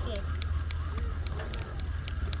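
Steady low hum of the boat's engine under faint, distant voices of other anglers, with scattered light ticks.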